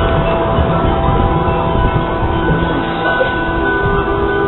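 Marching band front-ensemble percussion: metal mallet instruments and chimes ringing with several held, overlapping notes, over a steady low rumble.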